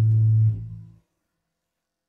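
Isolated bass line ending on a held low note that dies away about half a second in and is gone by one second, leaving silence.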